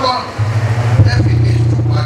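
A man's voice talking into a microphone and coming through a PA system, over a steady low hum.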